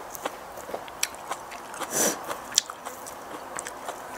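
Small crisp snaps and clicks, one or two a second, of fresh leafy green shoots being torn and snapped apart by hand, mixed with close-up chewing. There is a louder crunch about two seconds in.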